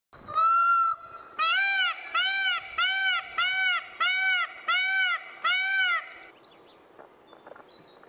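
Indian peafowl (peacock) calling: one long call, then a run of seven short calls that each rise and fall in pitch, evenly spaced about two-thirds of a second apart. Faint small-bird chirps follow near the end.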